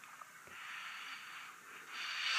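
A person sniffing a lip balm, one faint, long inhale through the nose to smell its scent.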